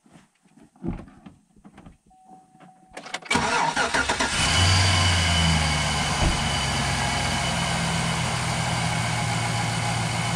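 Car engine being started: the starter cranks from about three seconds in, the engine catches a second or so later and settles into a steady idle. The battery is fairly discharged, and its voltage sags to 9.45 V while cranking, which is too low.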